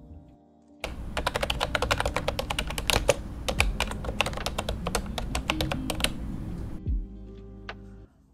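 Rapid computer-keyboard typing, many keystrokes a second, starting about a second in and stopping about a second before the end, over soft lo-fi background music.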